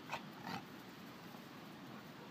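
Dogs at play: two brief sharp noises in quick succession near the start, over a steady low background hiss.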